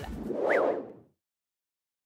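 Whoosh transition sound effect that swells and fades out over about a second, with a brief rising-then-falling tone at its peak.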